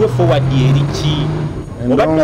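A motor vehicle engine passing on the street, with a steady low hum that holds for about a second and a half and then fades, under brief conversational speech.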